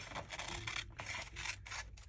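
Paper and card being handled on a craft table: a run of light clicks, taps and scrapes.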